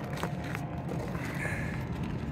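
Quiet outdoor background noise: a steady low rumble with a few faint clicks.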